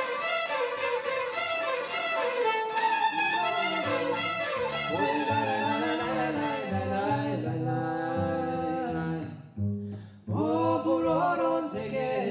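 Gypsy orchestra's bowed strings, violins and cello, playing a fast, busy tune. About two-thirds of the way through it gives way to male voices singing long held notes, with a brief break before the singing picks up again.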